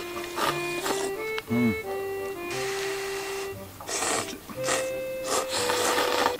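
Background music with held, steady melody notes, over repeated noisy slurps of instant cup-ramen noodles being sucked up with chopsticks.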